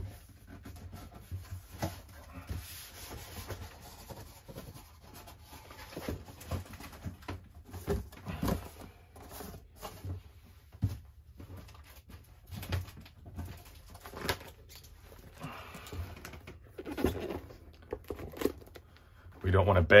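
Cardboard packaging handled at close range: scattered scrapes, rustles and light knocks as a boxed book set is slid out of its shipping box.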